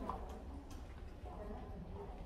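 Faint footsteps ticking on a hard floor over a low, steady hum, with faint voices in the background.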